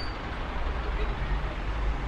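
Steady street traffic noise: a low rumble under an even hiss, with no distinct events.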